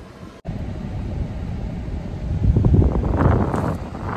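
Low rumble inside a car's cabin, with wind on the microphone. It breaks off for an instant just after the start, then grows louder past the middle before easing.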